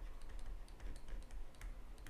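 Stylus writing on a tablet screen: faint, irregular little clicks and taps as the pen strokes out handwriting, over a low steady hum.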